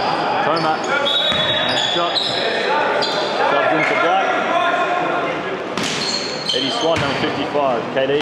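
Indoor basketball game on a hardwood court: sneakers squeak in short high-pitched chirps, a basketball bounces, and players call out. It all echoes in a large gym hall, with a sharp knock about six seconds in.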